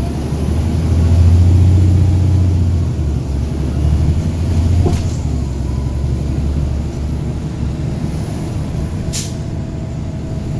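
Caterpillar C13 diesel engine of a NABI 40-SFW transit bus heard from inside the passenger cabin, a low drone that is loudest in the first few seconds and then settles to a steadier level. A short hiss of compressed air comes near the end.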